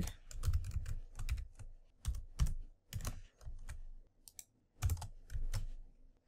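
Typing on a computer keyboard: irregular runs of keystrokes with brief pauses between them.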